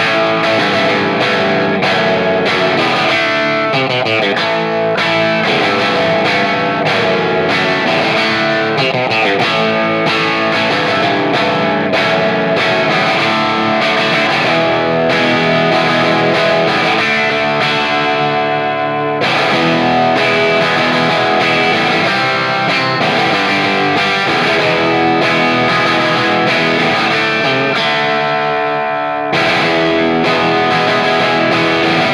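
Distorted electric guitar with P-90 pickups played through a cranked Pete Cornish-modified Hiwatt DR103 100-watt head, its normal and brilliant channels blended, into a Marshall cabinet with G12M blackback speakers: a driven, crunchy rock tone with chords strummed, pausing briefly about nineteen seconds in.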